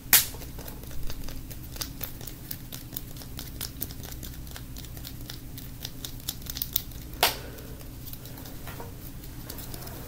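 Fingertips tapping and scratching on a yellow stitched ball held close to the microphone, in quick irregular taps with a louder knock just after the start and another about seven seconds in, over a steady low hum.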